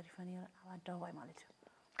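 A woman speaking softly, trailing off into a short pause near the end.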